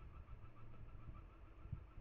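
Near silence: faint room tone with a low hum, and one soft click near the end.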